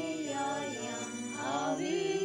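Offertory hymn sung over a steady instrumental accompaniment, the melody moving in long, gliding sung notes.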